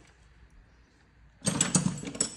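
Ratchet wrench clicking rapidly, starting about a second and a half in after a near-quiet moment.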